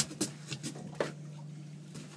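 Steady low hum of the boat's idling outboard motor, with a few sharp knocks from gear being handled on the boat: one at the start, another just after and one about a second in.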